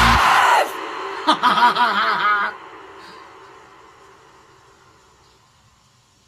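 The close of a heavy metal song: the full band cuts off under a second in, a wavering voice follows for about a second, and a held note fades away almost to silence.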